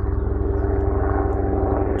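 Helicopter passing overhead: a steady engine drone with a fast, even beat from the rotor blades.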